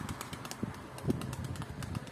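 Domestic pigeons cooing faintly, with scattered light clicks.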